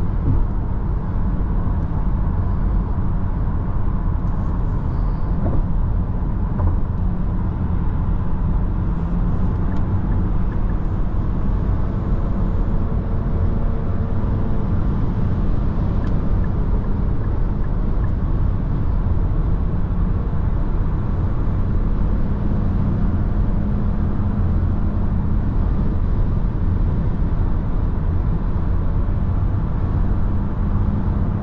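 Steady cabin noise of a Nissan X-Trail e-Power cruising at motorway speed, about 145 km/h: a constant roar of tyre and wind noise with a low, even hum underneath.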